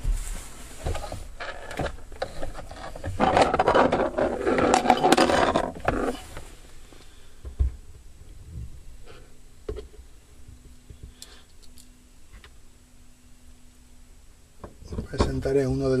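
Hands working the plastic dome-light housing back into its place in the car's headliner: a few seconds of rustling and scraping, then a few sharp clicks.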